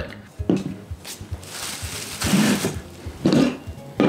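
Light clicks and knocks of a small metal ball-and-socket rig and a bar of soap being handled and set on a tabletop, with a brief rustling hiss in the middle.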